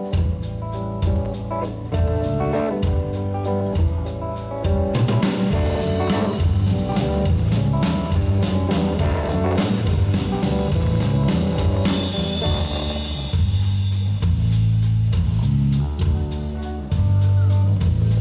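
Live rock band playing an instrumental intro on electric guitar, bass guitar and drum kit, with a cymbal crash about two-thirds of the way through.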